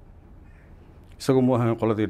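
A pause with faint room tone, then a man starts speaking Somali a little over a second in.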